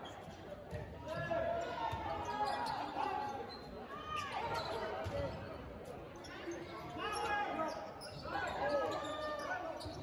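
A volleyball rally in a gymnasium: sharp hits on the ball and sneakers squeaking on the hardwood floor, with players calling out.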